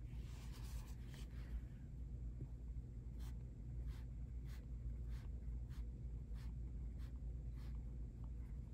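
Colored pencil on shrink plastic: a short scratching stroke at the start, then the pencil point tapping down in a steady series of small ticks about every two-thirds of a second as dots are made.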